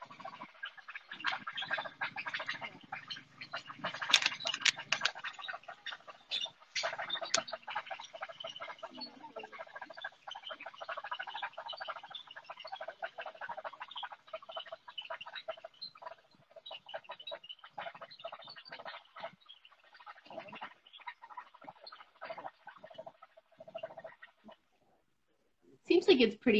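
Indistinct voices and crackling, rustling noise from an outdoor phone microphone, compressed by a live-stream link. The sound cuts out about two seconds before the end.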